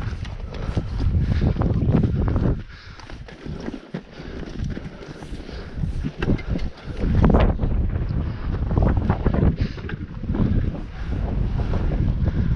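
Wind buffeting the microphone in gusts, with a lull about three seconds in.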